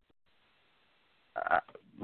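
A man's voice over a telephone line: a pause of about a second and a half, then a short hesitant "uh".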